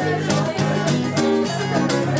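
Acoustic guitar strummed in a steady rhythm, an instrumental passage with no singing.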